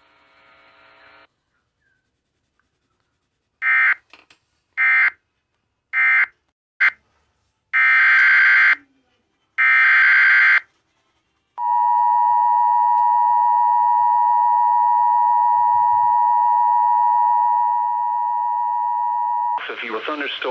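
Emergency Alert System SAME data bursts, six in a row: four short ones, the closing end-of-message codes of one warning, then two longer header bursts about a second each. Then the two-tone EAS attention signal sounds steadily for about eight seconds, announcing a new severe thunderstorm warning.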